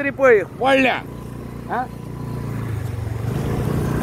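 A man's voice briefly, then the steady low rumble of a moving vehicle's engine and road noise, growing a little louder near the end.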